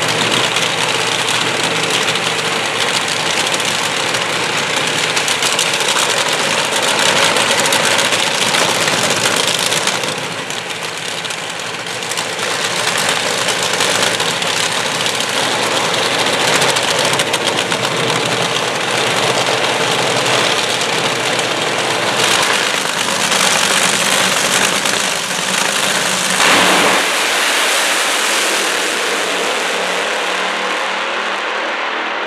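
Two injected-nitromethane Top Alcohol Dragster engines running loud through staging, then both launching together about 26 seconds in with a sharp surge; the deep low end falls away as the cars race off down the track.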